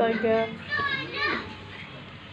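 Young children's voices: two short, high-pitched utterances in the first second and a half.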